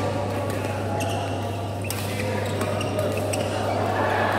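Badminton rackets hitting shuttlecocks in a large sports hall: sharp, short cracks at irregular intervals, several a second at times, from the rallies on this and neighbouring courts.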